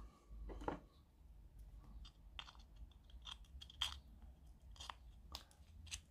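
Faint, scattered clicks and rustles of hands handling a plastic GU10 LED bulb as it is connected to power. The sharpest click comes about four seconds in.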